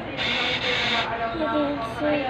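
Bill acceptor of a cash payment kiosk whirring for about a second as it draws in a banknote.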